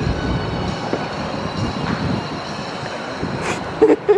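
Coin-operated kiddie carousel running: a steady mechanical rumble, with a sharp knock about three and a half seconds in.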